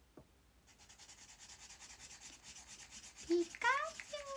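A pen scribbling rapidly on paper in quick back-and-forth strokes, filling in an area of a drawing. Near the end a young woman's voice cuts in with a short hum and then a rising vocal sound, louder than the scribbling.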